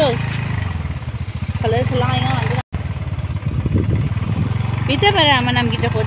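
Motorbike being ridden along, its engine and wind on the microphone making a steady low rumble, with a person's voice talking briefly about two seconds in and again near the end. The sound cuts out for a split second midway.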